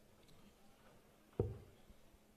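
A steel-tip dart landing in a Gladiator III bristle dartboard with a single sharp thud about one and a half seconds in.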